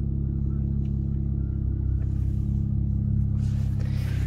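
Steady low hum of a 2019 Dodge Charger SXT's V6 engine idling in Park, heard from inside the cabin.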